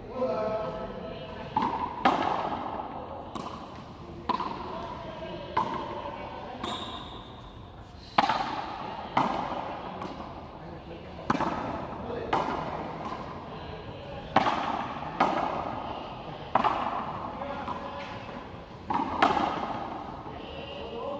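Hand pelota rally: the hard ball smacked by bare hands and slamming against the frontón wall and floor, sharp cracks every second or two, often in quick pairs, each ringing on with echo off the court walls.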